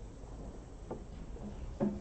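Snooker cue ball played down the table: a faint click about a second in, then a louder, duller knock near the end as the cue ball comes off the bottom cushion.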